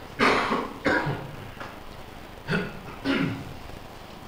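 Someone coughing and clearing their throat in four short bursts, two in the first second and two more about halfway through.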